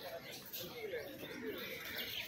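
Low voices of people talking nearby, with birds calling and chirping in the trees.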